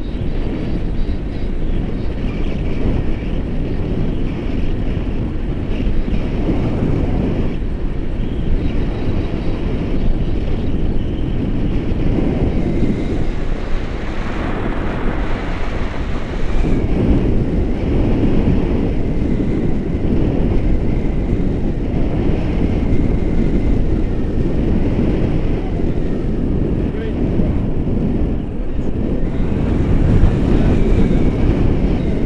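Wind buffeting a handheld action camera's microphone in paraglider flight: a steady, deep rush of airflow noise with no breaks.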